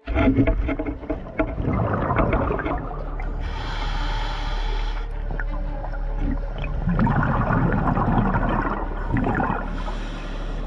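Scuba diver breathing through a regulator, heard underwater: rounds of rushing exhaled bubbles over a steady low hum.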